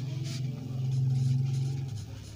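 A low engine-like hum that swells over about a second and then fades, under faint pen scratching on paper.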